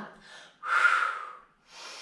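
A woman breathing hard with the effort of a Pilates exercise. There is a loud, breathy exhale about half a second in, then a softer breath near the end.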